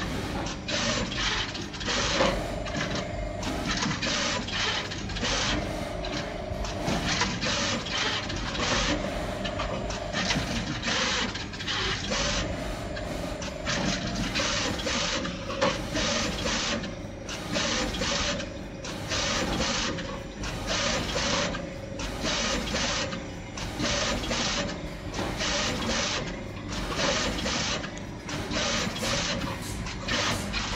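Juki pick-and-place machine running, its placement head darting about with rapid, irregular mechanical clatter and hiss several times a second, over a whine that comes and goes.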